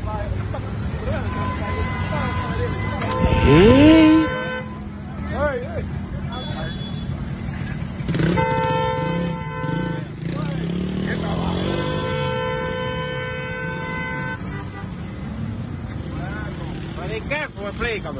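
Street traffic with motorcycle engines running. A motorcycle engine revs up sharply about three seconds in, the loudest moment. A vehicle horn sounds two long blasts, about eight and about twelve seconds in.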